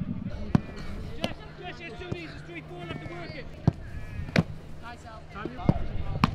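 A football struck hard about five times, each a sharp thud, the loudest a little before and just after four seconds in and again near the end. Voices call out between the strikes.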